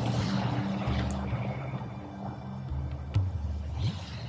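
Soft ambient background music: sustained low pad notes that shift to new notes about a second in and again near three seconds in, with a faint click late on.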